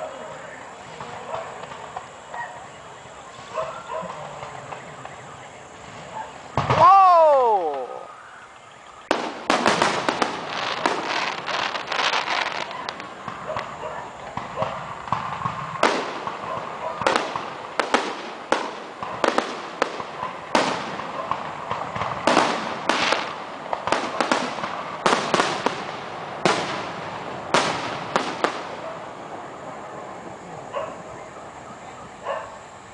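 Aerial fireworks show: low murmur at first, then a loud whistle about seven seconds in that rises and falls in pitch over about a second. From about nine seconds a continuous barrage of shell bursts follows, sharp bangs and crackle, several a second, over a steady haze of noise.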